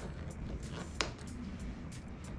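A black-and-red tube-style cue case being opened at its end cap: low handling noise with one sharp click about a second in as the cap comes free.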